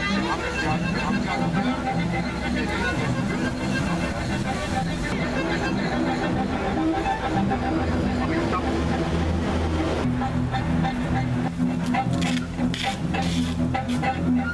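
Bowed double bass and violin playing long held notes together with an improvised scrap-metal instrument. From about eleven seconds in, sharp clanks and scrapes from the metal instrument join in.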